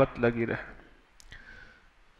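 A man's speaking voice trailing off in the first half-second, then a pause holding a single sharp click and a faint soft hiss.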